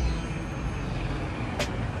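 Road traffic on a city street: a steady rumble of passing cars, with one sharp click about one and a half seconds in.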